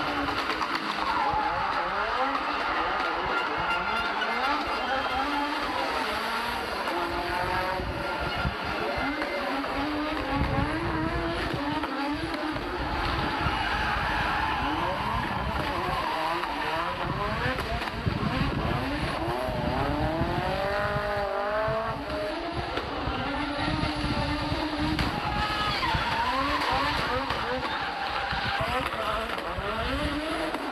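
Turbocharged five-cylinder engine of an Audi Sport Quattro rally car revving hard, its pitch rising and falling again and again as it is driven flat out, with tyres squealing as the car slides.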